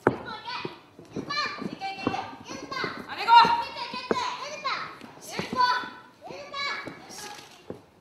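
Several high-pitched voices shouting and calling out, overlapping and drawn out, with a few sharp knocks in between.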